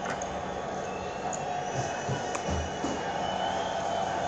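Steady background sound of a football match on television: an even wash of stadium crowd noise with faint sustained tones, no commentary.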